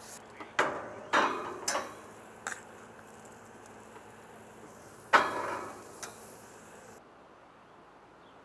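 Metal tongs clacking and scraping on a gas grill's steel cooking grates as racks of raw baby back ribs are laid down: several sharp clacks in the first two and a half seconds, then a louder clatter with a short ring about five seconds in.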